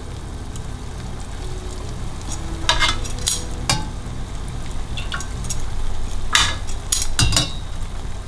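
Metal tongs clinking against a stainless-steel saucepan as jalebis are turned and lifted out of warm sugar syrup: a handful of sharp clinks in two clusters, a little before and after the middle. A steady low hum and hiss run underneath.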